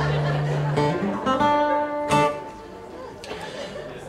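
Acoustic guitars playing and strumming chords, with a last strum about two seconds in that rings out and dies away.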